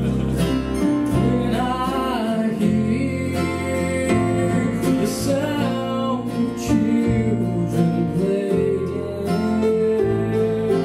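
Live southern gospel music: a male voice singing a slow melody to acoustic guitar strumming, over sustained low notes that change every second or two.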